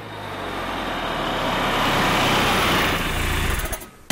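A car driving past on a street, its engine and tyre noise swelling over the first two seconds and dropping away just before the end.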